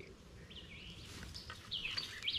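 Faint bird chirps over a quiet outdoor background: a few short whistles that rise and fall in pitch, some about half a second in and more near the end.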